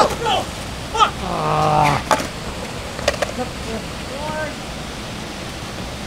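Steady rush of water pouring through a concrete spillway channel, under people's shouts and exclamations, the longest a drawn-out yell in the second second. A few sharp clacks sound over it, typical of a skateboard knocking on concrete.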